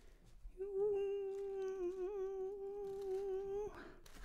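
A woman humming one long, steady note that wavers slightly midway and stops just before the end.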